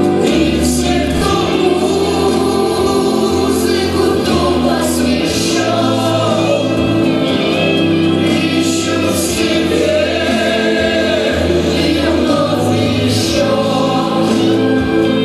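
A man, a young woman and two girls singing a song together into microphones over instrumental accompaniment with a steady bass line.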